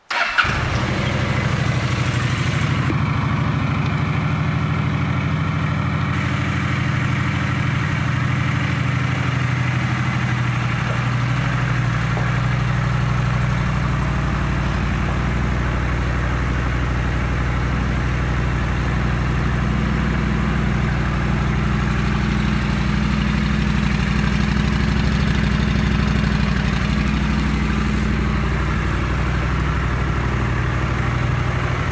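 A 2011 Honda Shadow Aero 750's 745 cc V-twin engine starts right at the beginning and settles into a steady idle.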